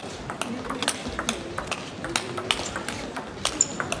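Table tennis ball clicking off the bats and the table in a fast rally, a sharp knock every few tenths of a second.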